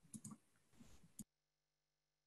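Near silence with a few faint clicks, then the sound cuts off abruptly about a second in.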